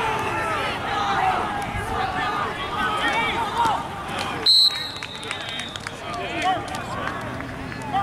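Many voices of players and coaches talking and calling out over each other across an outdoor football field. About halfway through a short, loud, shrill whistle blast sounds, with a fainter trailing tone after it.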